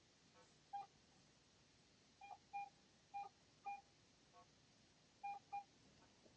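Faint, short electronic beeps from a metal detector: a single beep about a second in, several more single and paired beeps over the next few seconds, and a pair near the end, all at one steady mid pitch.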